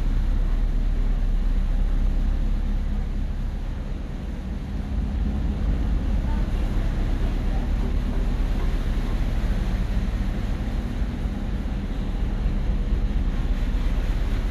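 Steady low drone with a hum from a car ferry's engines and machinery, heard inside a passenger deck.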